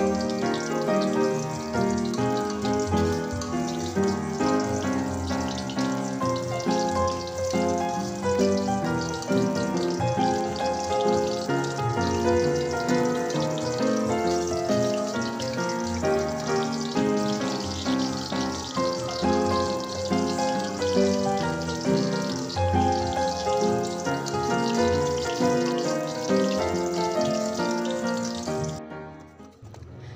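Background music over shallots and garlic frying in shallow oil in a steel wok, a steady crackling sizzle under the melody. Both fade out just before the end.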